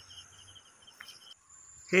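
Insects chirping: short runs of rapid high chirps, about ten a second, over a steady high-pitched buzz. A little over a second in the sound changes abruptly to a different steady high drone.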